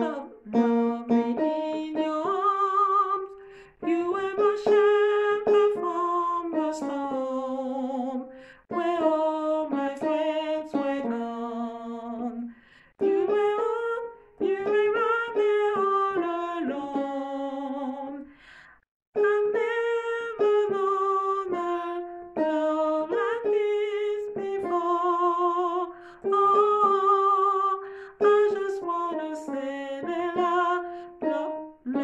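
A woman singing the alto harmony line of a gospel worship chorus, holding notes in phrases of about four seconds with short breaks for breath between them.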